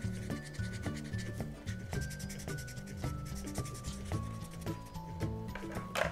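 A colouring marker scribbling over corrugated cardboard in quick, repeated back-and-forth strokes as an area is filled in light green, with soft background music of held notes underneath.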